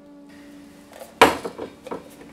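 Hard objects clattering on a wooden workbench: one loud knock about a second in that rings out briefly, then a lighter knock near the end, over a faint steady hum.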